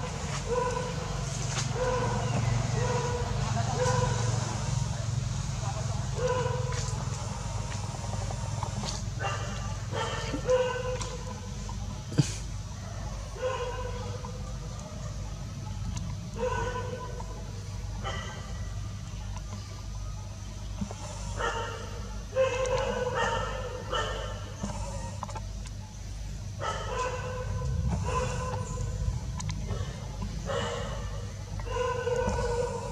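Macaque crying: a long series of short, high, evenly pitched cries, some in quick runs and some spaced apart, with a sharp click about twelve seconds in.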